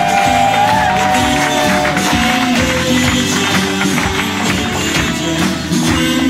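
Recorded music played loud from a DJ's turntables, with a steady beat and a sliding melody line in the first two seconds or so.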